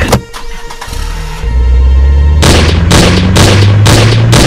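A sharp hit, then a car engine starting to rev and growing loud about halfway through, under loud dramatic film music.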